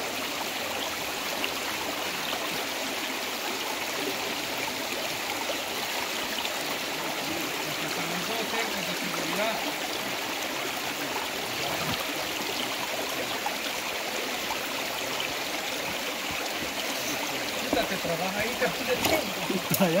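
Shallow river water flowing over stones and rocks, a steady even rush that holds its level throughout.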